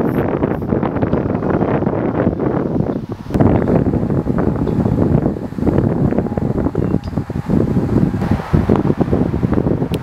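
Loud, gusting wind noise buffeting the camera microphone, a rumbling haze that dips briefly about three seconds in and again past the middle.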